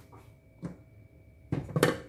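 Kitchen handling noise: quiet at first with one small click, then a short clatter near the end as a wooden spoon of solid coconut oil goes into an aluminium pot and a plastic jar is set down on the stovetop.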